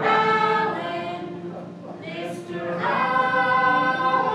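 Several voices singing together in long held notes, loud at first, dipping in the middle, then swelling into a new sustained note about three seconds in.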